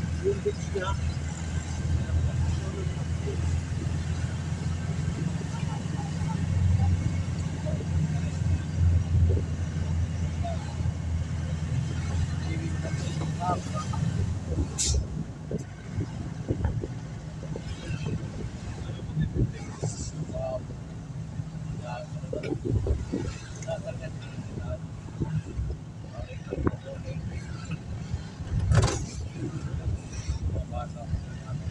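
Engine and road noise of a moving van heard from inside the cabin: a steady low drone that eases off about halfway through. A few sharp knocks or rattles break in, the loudest near the end.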